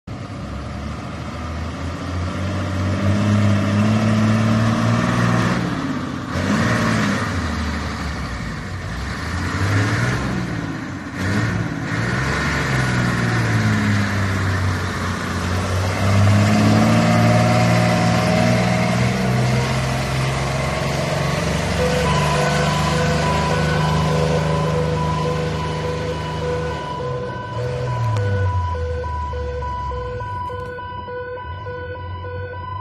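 Fire engine's engine revving as it pulls away, its pitch climbing and dropping back several times as it shifts through the gears. From about three quarters of the way in, a steady pulsing tone joins it.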